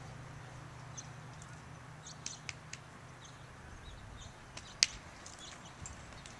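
Quiet outdoor background with a steady low hum and a few short faint clicks, a cluster of them about two seconds in and one sharper click near five seconds.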